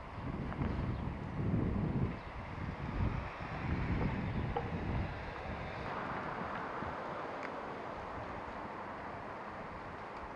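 Wind buffeting the microphone in uneven gusts for about the first five seconds, then settling to a steadier, quieter outdoor noise.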